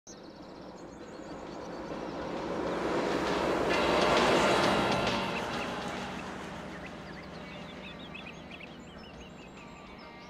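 A pickup truck driving past on a paved road: engine and tyre noise grow louder to a peak about four seconds in, then fade away as it goes by.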